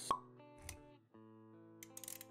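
Intro sound effects over soft background music: a sharp pop just after the start, the loudest sound, then a duller low thud about two-thirds of a second in. Sustained music notes carry on underneath, dropping out briefly around the one-second mark.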